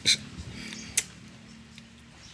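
A short hiss at the start, then a single sharp click about a second in, over a faint steady hum.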